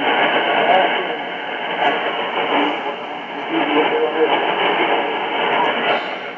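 A JRC NRD-545 receiver's speaker playing a faint voice from a distant AM shortwave broadcast, cut off above the speech range and carried on steady hiss. The level swells and sinks as the signal fades in and out: the receiver's AGC pumping the sound as the signal comes in strong, then weak.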